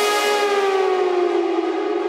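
Melodic techno breakdown with no beat or bass: a sustained synthesizer tone slides slowly down in pitch, like a siren winding down, while its bright upper sound fades away.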